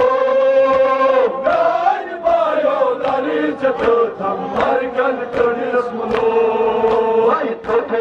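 Kashmiri noha, a mourning chant, sung by a man into a microphone in long held notes. Sharp slaps of men beating their chests (matam) come in time, about two to three a second.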